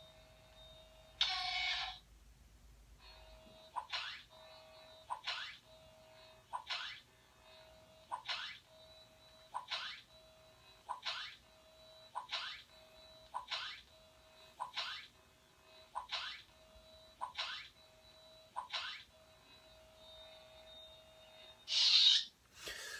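LED lightsaber soundboard playing through the hilt's small speaker, faint. A louder burst comes just over a second in. From about three seconds in there is a steady electronic hum, interrupted by a short sound effect about every second and a half as the blade cycles through its colors.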